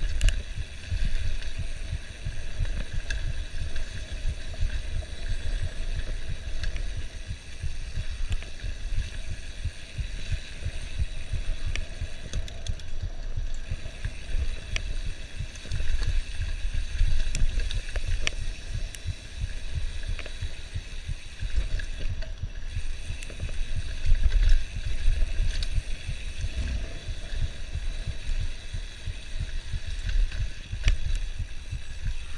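Wind buffeting the microphone in a continuous uneven rumble during a fast mountain bike descent, with scattered clicks and rattles from the bike jolting over a rough dirt trail.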